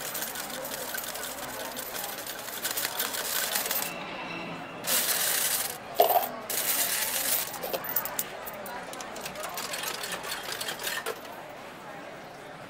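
Coins clinking in fast succession as a poker machine pays out into its metal coin tray, with louder runs about five to seven seconds in.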